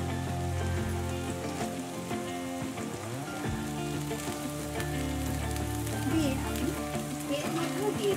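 Potato, carrot and green beans frying in hot oil in a kadai: a steady sizzle, turned with a wooden spatula at the start. Soft background music with held notes runs beneath.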